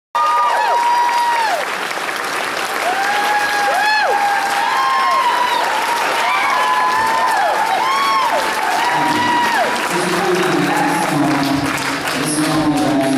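Audience applauding, with many shrill pitched tones rising and falling over the clapping. A voice comes in about nine seconds in.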